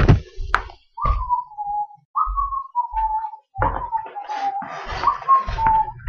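A person whistling a short tune, a string of single notes that each slide slightly downward, with a couple of handling thumps near the start.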